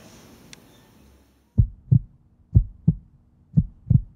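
Heartbeat sound effect: three low double thumps, about one a second, starting about a second and a half in.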